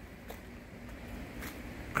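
Quiet, steady low background noise with a soft click shortly after the start and a few faint ticks later on.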